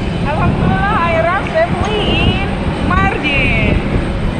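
A high-pitched voice calling out in short bursts over a loud, steady low rumble of outdoor noise on an airport apron.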